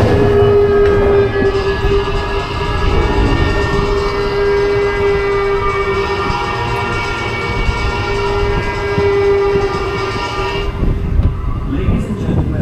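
Roller coaster train climbing a chain lift hill: a steady machine hum and whine from the lift chain and drive, over a rattling rumble. The higher tones of the whine fade out near the end.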